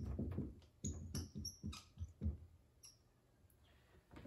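Dry-erase marker squeaking and scratching on a whiteboard in a quick run of short strokes while writing, stopping about two and a half seconds in.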